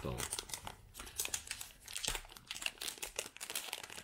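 Small plastic zip-lock packets crinkling and rustling in irregular bursts as gloved hands handle and open them.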